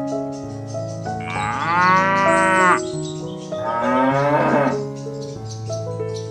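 A cow mooing twice, a long call starting about a second in and a shorter one just after the middle, over background music.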